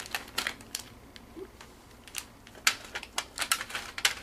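Scattered light clicks and crinkles of plastic and paper packaging being handled as a Japanese DIY candy kit is opened.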